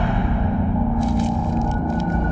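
Background film score: a low, sustained, tense drone.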